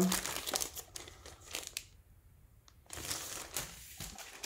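Clear plastic bag crinkling as a hard plastic graded-comic slab is slid out of it. There are two stretches of rustling with a short pause of about a second between them.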